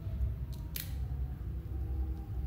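A stack of trading cards being handled and pried apart, with two short crisp clicks about halfway in, over a low steady hum. The cards are stuck together.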